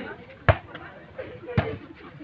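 A volleyball struck by hand twice, two sharp smacks about a second apart, the first the louder.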